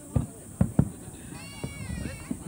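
Three distant firework shell bursts, heard as low booms in quick succession in the first second. In the second half comes a short high-pitched cry that rises and falls in pitch.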